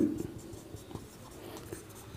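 Marker pen writing on a whiteboard: faint, scratchy strokes as letters are drawn.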